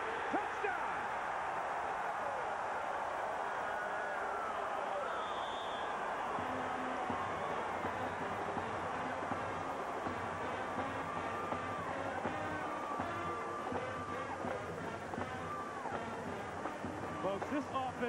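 Stadium crowd cheering a home-team touchdown, a dense roar of voices. About six seconds in, a marching band starts playing underneath it.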